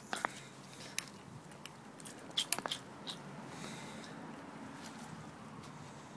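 A few faint, scattered clicks and crunchy handling noises from a pressure washer pump's piston half as its pistons are pushed in by hand, over a faint steady hiss.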